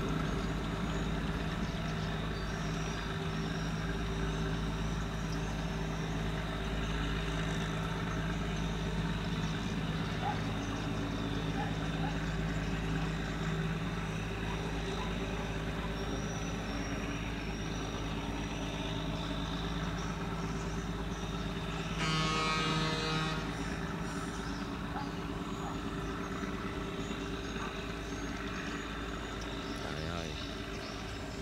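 Diesel engine of a small wooden river boat running steadily at an even pitch. About two-thirds of the way through there is a brief, louder blast, like a horn.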